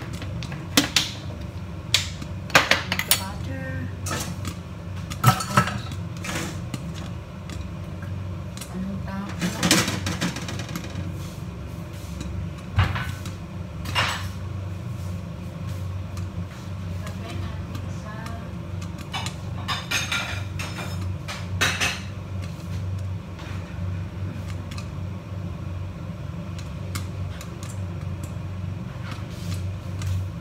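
Popcorn popping now and then in a lidded stainless-steel saucepan on a gas burner, the pan already nearly full of popped corn: single sharp pops, more frequent in the first half and sparse later. A steady low hum runs underneath.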